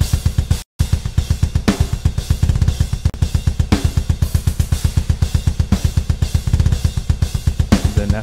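Programmed metal drum kit played back from MIDI: a rapid, even stream of double-kick bass drum under steady cymbal hits, with a snare about every two seconds. Playback cuts out briefly just under a second in and restarts with humanized, randomized note velocities, so the hits vary in loudness.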